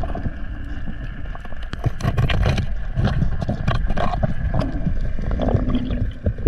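Underwater camera audio: a steady low rumble of water movement against the housing, with many scattered clicks and crackles.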